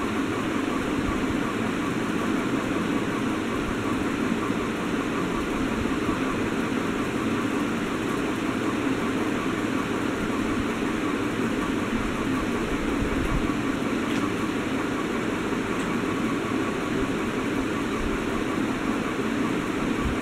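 Steady room noise: an even hum and hiss that does not change.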